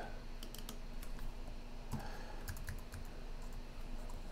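Light typing on a computer keyboard: scattered key clicks in a few short runs.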